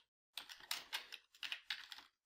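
Computer keyboard being typed on: a quick run of about a dozen keystrokes, starting about a third of a second in.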